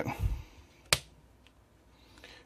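Handling noise: a soft low bump just after the start, then one sharp click about a second in.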